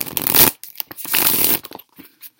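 A deck of tarot cards being shuffled in two quick bursts, the second a little longer.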